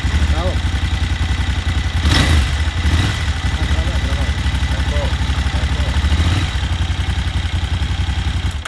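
KTM 950 Adventure S V-twin idling through an Akrapovič muffler, with a quick throttle blip about two seconds in and a smaller one about a second later.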